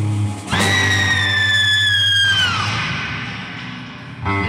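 Live surf-rock band music: after a short break the band comes back in and a single high, held wailing tone sounds over it. The band cuts off partway through, and the tone sinks, slides down and fades out.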